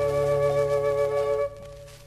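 Quena and guitar ensemble holding the final sustained chord of a Baroque piece. The chord is cut off about one and a half seconds in, leaving a short fading ring.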